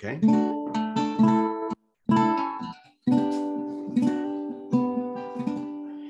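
Ukulele strummed in chords as the instrumental lead-in to a song, each strum ringing on. The sound cuts out to silence twice, briefly, about two and three seconds in.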